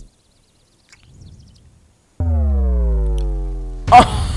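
About two seconds of near silence, then one long synth bass note that slowly falls in pitch and fades out, like the closing note of an electronic music track.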